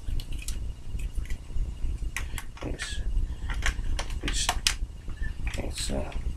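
Plastic Lego bricks clicking and knocking as a Lego magazine is worked into the receiver of a Lego gun: a loose string of sharp clicks.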